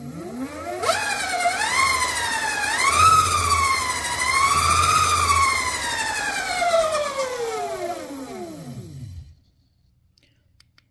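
Electric bike motor under Fardriver controller drive, whining as the throttle spins the wheel up off the ground. The pitch follows the wheel speed: it climbs in a few steps over the first three seconds, wavers, then falls steadily as the wheel coasts down, and stops about nine seconds in.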